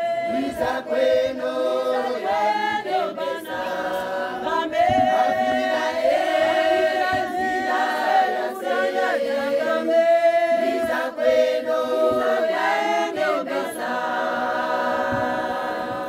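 A choir of women singing together, unaccompanied.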